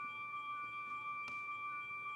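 Acoustic guitar strings kept sounding by the Vo-96 acoustic synthesizer: two steady, pure high tones that hold on with no one picking, with one faint click a little past a second in.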